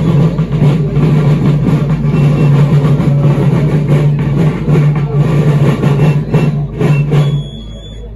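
A marching band playing as it marches, with drums and wind instruments. The music breaks off suddenly about seven and a half seconds in, with one short high note held as it ends.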